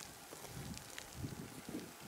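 Quiet outdoor ambience of faint wind, with a few soft clicks and crunches of loose volcanic cinder underfoot.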